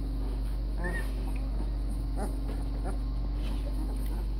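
Two-week-old puppies whimpering and squeaking in short, high calls, the clearest about a second in, with a steady low hum underneath.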